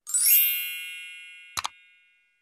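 A bright, glittering chime sound effect rings out and fades away over about a second and a half. Near the end come two quick clicks of a mouse-click sound effect.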